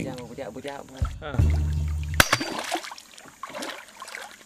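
Men's voices in a dugout canoe, then one sharp knock about two seconds in, with water splashing as a large hooked fish thrashes against the side of the canoe.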